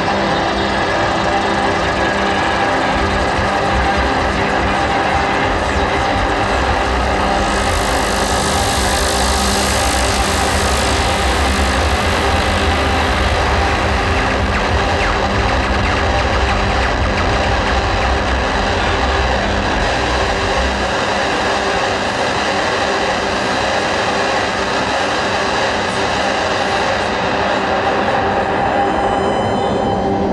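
Loud, dense electronic noise drone from a live synthesizer set: many sustained tones stacked over hiss. A heavy low rumble drops out about two-thirds of the way through. A bright hiss layer swells in about a quarter of the way in and fades away by the middle.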